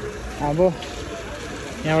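Steady low rumble of a vehicle engine with traffic noise on a rain-wet street, under a short voiced syllable about half a second in and a man starting to say "here" at the end.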